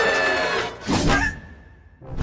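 Cartoon characters screaming in fright, cutting off about two-thirds of a second in. This is followed by a short hit and a single high held note of background music that fades away.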